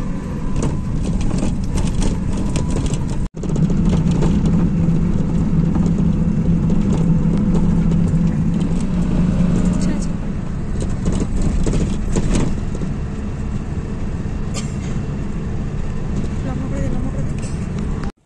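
Steady engine and road noise inside a moving bus, with a low drone that is strongest from about three to ten seconds in. The sound cuts out sharply for an instant about three seconds in.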